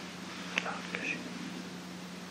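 A person's faint whispering, a few short sounds between about half a second and just over a second in, over a steady low hum and hiss.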